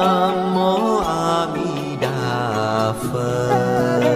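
Buddhist chant sung over music: a voice holding long notes that slide to new pitches about once a second.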